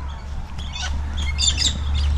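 A flock of galahs calling: short, high, screechy squawks, several overlapping between about half a second and a second and a half in, over a steady low rumble.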